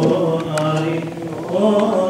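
Men's voices chanting Coptic liturgical chant, holding long drawn-out notes that bend slowly in pitch. A few short, sharp ticks sound over the chant about half a second in and again near the end.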